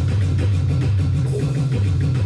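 Drum kit played along with music that carries a steady low bass, with regular drum hits; the kit is an Alesis electronic drum kit.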